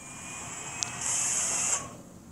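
Whooshing swell from the music video's opening logo animation, played back through the reaction recording: it builds, gives a sharp click a little under a second in, then turns to a bright hiss that cuts off suddenly near the end.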